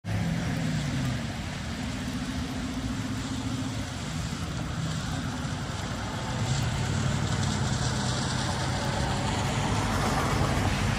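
A motor vehicle engine running, a low hum that shifts slightly in pitch and grows louder in the second half, over a steady outdoor hiss.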